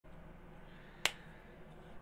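A single sharp click about a second in, over a faint steady low hum of room tone.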